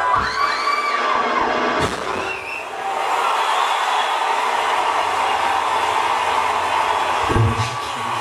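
Audience cheering and screaming, with whistles in the first two seconds and a single sharp bang just before two seconds in. Music with a deep bass comes back in near the end.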